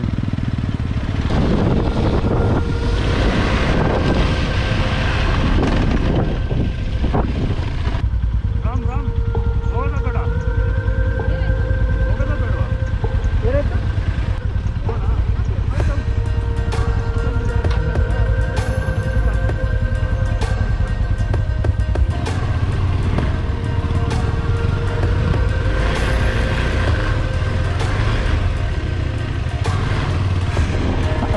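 Single-cylinder engine of a KTM 390 Adventure dual-sport motorcycle running steadily at low trail speed over dirt, under background music with held notes.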